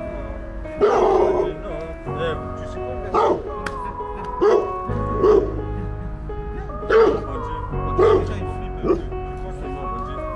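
Dog barking in short bursts, about eight times, over background music.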